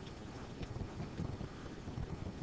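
Faint, steady background hiss and room noise from a voice microphone, with a few soft ticks.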